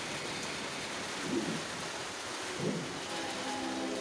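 A TV horror segment's soundtrack playing through a projector's speaker: a steady hiss with two brief low sounds, then a held low chord starting about three seconds in.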